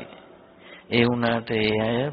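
An elderly Buddhist monk's voice intoning Pali words in a slow, level-pitched chant. It begins about a second in, after a brief pause.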